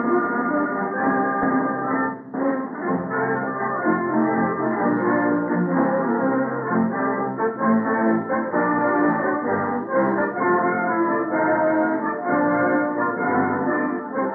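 Studio radio orchestra playing an overture, brass prominent, in the dull, narrow sound of an old broadcast recording; the music dips briefly about two seconds in.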